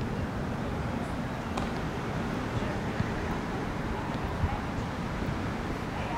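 Outdoor ballfield ambience: a steady low background rumble with faint distant voices of players and onlookers, and a few faint knocks.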